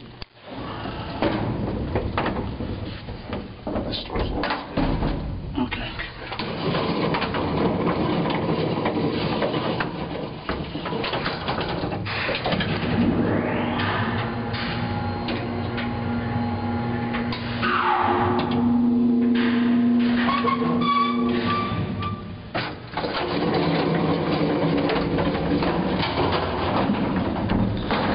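Silo elevator running: mechanical hum with steady tones in the middle stretch, a falling pitch glide partway through, and a few clanks early on.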